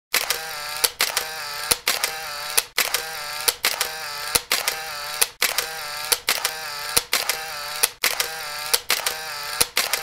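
Looped intro sound effect: a sharp click about every nine-tenths of a second, each followed by a pitched ringing tone.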